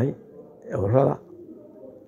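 A man's voice says one short word in a pause between phrases, followed by a faint, low, wavering tone in the background.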